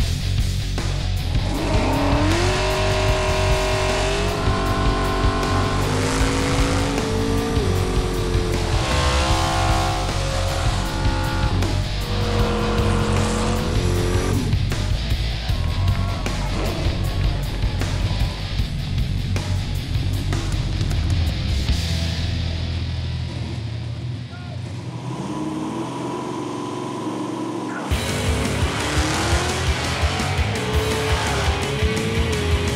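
Two drag cars' nitrous small-block V8s, a Chevy in a Vega and a Ford in a Capri, revving through burnouts with tyres spinning and squealing, mixed with rock music. Near the end the engine noise comes in loud again suddenly.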